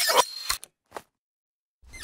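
Video-rewind sound effect: a brief garbled, sped-up chatter that cuts off about half a second in, followed by two sharp clicks and then dead silence as the picture is paused.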